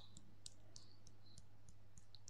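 Faint, irregularly spaced small clicks, about seven in two seconds, over a low steady hum.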